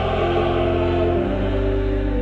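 Church choir singing slow, sustained chords over a held low organ bass; the harmony moves to a new chord a little past halfway.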